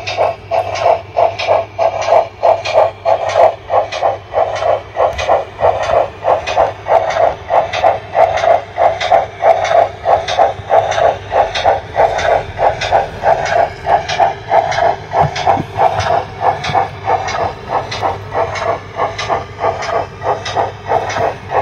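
Dapol O gauge 57xx pannier tank model's DCC sound decoder playing steam exhaust chuffs through its speaker, a steady run of about three beats a second over a low hum as the locomotive runs.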